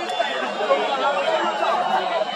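Football stadium crowd: many spectators' voices talking and calling at once in a steady chatter.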